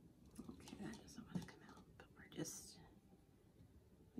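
Faint whispered speech: a woman muttering to herself under her breath.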